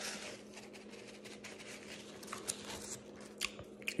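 Faint chewing of a sandwich with closed lips, with a few small wet clicks in the second half, over a low steady hum.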